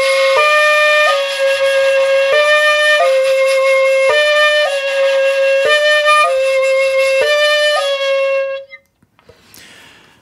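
Shakuhachi holding one long note and slowly alternating between the two fingerings of ko (holes 1 and 2 opened in turn), stepping between two slightly different pitches about once a second, with a brief in-between sound at each change. This is the slow first exercise for learning koro koro. The note stops about nine seconds in.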